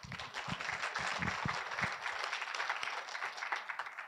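Audience applauding: many hands clapping steadily, dying away at the end.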